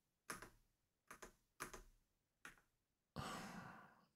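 A handful of faint, scattered computer keyboard keystrokes, then a breath let out as a sigh near the end.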